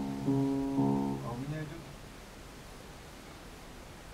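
Upright piano chords: a chord already ringing is followed by two more struck about a third of a second and nearly a second in, then the sound dies away within about two seconds.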